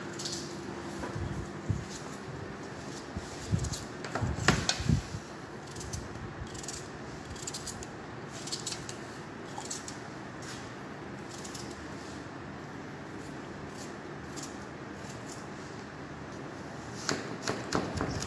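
A small knife cuts wedges from an onion held in the hand, making repeated short crisp cuts and clicks as the pieces drop onto tomatoes in a metal baking tray. A cluster of louder knocks comes about four to five seconds in, over a steady low hum.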